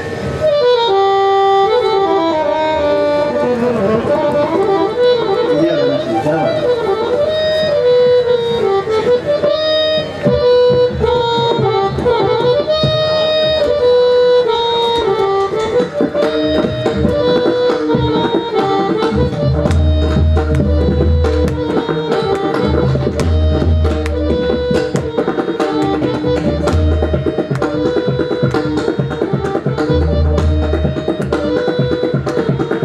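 Harmonium playing a repeating melodic refrain under a pakhawaj solo, with pakhawaj strokes throughout. The strokes grow denser about halfway through, and from about two-thirds in, deep bass-head strokes come in clusters.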